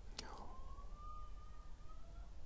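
A quiet pause: low background hum with a faint thin steady tone, and one short breath-like sound just after the start.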